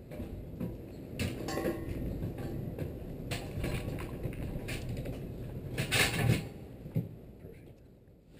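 A two-wheel hand truck carrying a large box rolling up a folding aluminium ramp: a continuous rumbling rattle of the wheels over the metal slats. Sharp clanks come about a second in, around three seconds, and twice near the end, the loudest at about six seconds, before the rattle dies away as the truck reaches the top.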